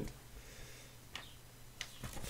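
Two faint, sharp clicks about two-thirds of a second apart, over a quiet background of hiss and a low steady hum.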